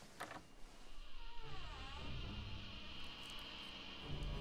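Eerie suspense sound from a film soundtrack: a short click, then a low drone builds under wavering, gliding tones and a steady high whine, building tension as the door knob is shown in the dark.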